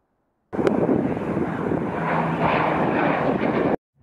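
Aircraft engine noise: a steady rushing drone that starts abruptly about half a second in and cuts off suddenly just before the end.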